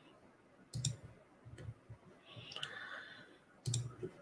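A few faint, sharp clicks from computer controls at a desk, the loudest about a second in and near the end, with a brief soft hiss around the middle.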